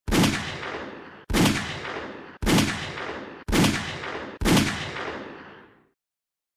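Five pistol shots from a micro-compact .380 ACP pistol firing CorBon DPX 80-grain rounds, about one a second. Each crack is followed by a fading echo that is cut short by the next shot.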